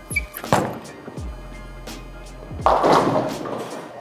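A reactive-resin bowling ball thuds onto the lane about half a second in, rolls, and a little over two seconds later crashes into the pins in a loud clatter lasting about a second. Background music with a steady beat plays throughout.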